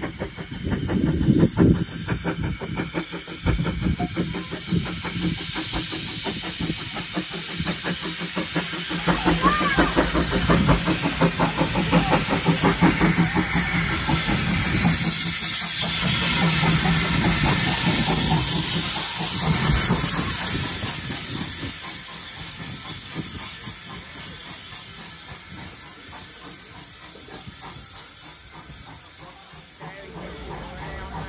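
Small steam tank locomotive drawing into a station, hissing steam from around its wheels as it runs in. The hiss swells to its loudest a little past halfway as the engine passes close by, then fades as the coaches roll past.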